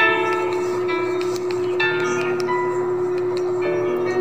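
Instrumental intro of a karaoke backing track: a note held throughout under a series of short struck notes, one after another, with no voice yet.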